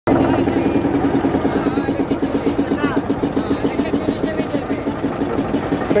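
Small motorboat engine running steadily with a fast, even chugging pulse, driving the boat along the river.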